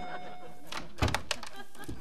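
A dull thunk about a second in, followed by a few lighter knocks and clicks.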